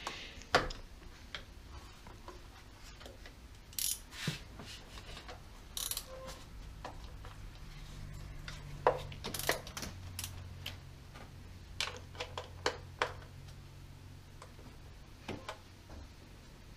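Hand ratchet and socket backing out the valve cover's 10 mm bolts, with scattered metallic clicks and clinks of tool and bolts. A faint low hum comes in about halfway.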